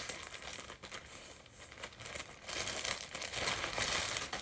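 Thin plastic mailer bag crinkling as it is handled and pulled open, louder in the second half.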